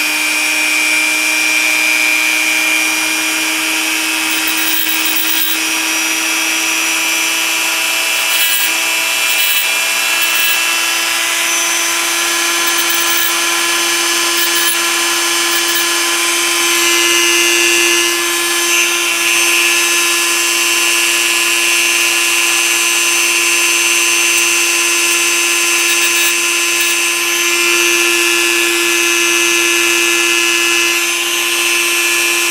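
Dremel rotary tool running with a steady whine while its small abrasive wheel grinds the steel extractor of a 6.5 Grendel rifle bolt, reshaping it because the extractor is hanging up. The pitch creeps slowly upward.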